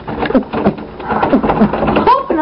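Boys' short, frightened vocal sounds, a few quick 'oh's falling in pitch, mixed with knocks and scuffling from movement.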